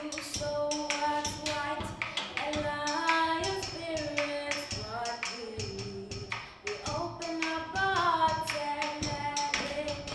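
A group of young voices sings a wordless melodic refrain in long, gliding notes, over a drum struck with a stick in a steady beat.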